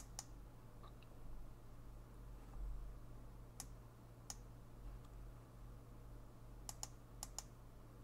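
Faint, scattered clicks of a computer mouse, several of them in quick pairs, as parts of an animation rig are selected on screen, over a steady low electrical hum.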